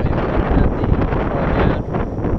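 Wind buffeting the microphone: a steady, loud rushing noise that is heaviest in the low end.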